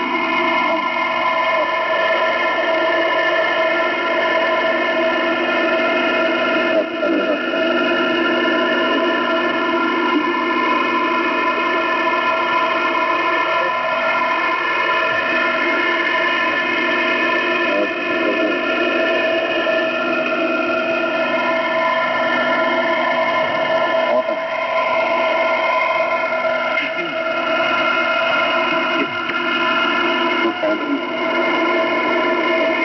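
Shortwave radio reception in lower-sideband mode on 5448 kHz: hiss with several steady whistling tones at different pitches, and faint, distorted voice-like sounds sliding up and down through it. There is no clear speech.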